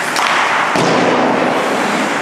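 Ice hockey play in a rink: a few sharp knocks of stick and puck within the first second, over a louder rush of noise that swells and fades.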